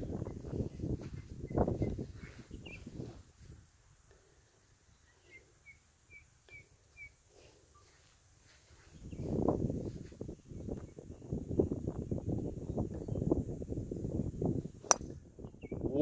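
A driver strikes a golf ball off the tee with one sharp crack about a second before the end. Before it, wind rumbles on the microphone, and in a quieter stretch in the middle a bird chirps about six times.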